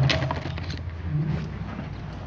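A pause between speech: a low, steady room hum, with a few faint clicks in the first half-second.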